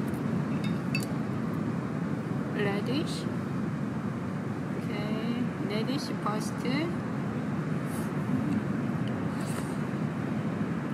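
Light clicks of a spoon and chopsticks against a pot and plate as food is served, over a steady low background noise, with faint snatches of voice.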